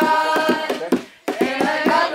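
A group singing together while clapping their hands in a quick, steady rhythm; the singing and clapping break off briefly a little after a second in, then pick up again.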